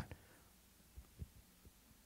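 Near silence: room tone with a faint low hum and a few faint, short low thumps about a second in.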